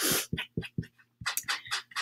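A woman's breathy, non-speech sounds: a sniff at the start, then a string of short breathy chuckles with a brief pause in the middle. Her nose is running from allergies.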